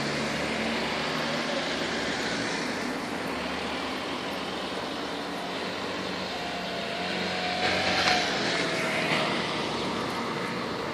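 Steady engine drone with a low hum, swelling louder with a faint sliding whine around eight seconds in.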